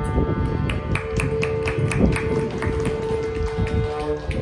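Mridangam and ghatam playing a quick run of rhythmic strokes, about five or six a second, over a steady held drone note. This is a Carnatic percussion passage with the flute resting.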